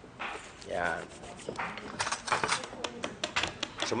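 A utensil clicking quickly against a mixing bowl as a batter is stirred, with the clicks thickest in the second half, under talk.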